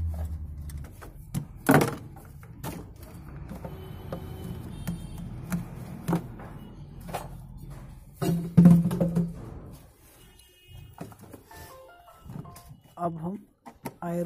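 Scattered clicks and knocks of plastic and metal parts being handled as an air-intake hose and air filter box are worked loose in a car engine bay, with a person's voice now and then and music.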